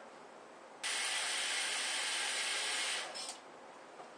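Kitchen faucet turned on, water running in a steady hiss for about two seconds from about a second in, then tapering off as it is shut.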